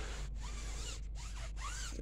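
A block applicator rubbing liquid protectant onto a car tire's rubber sidewall, in several short back-and-forth strokes.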